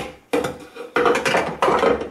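LEM vertical sausage stuffer being put together: a sharp clack at the start, then three short rounds of metal-on-metal scraping and clanking as the stainless steel canister is seated in its frame.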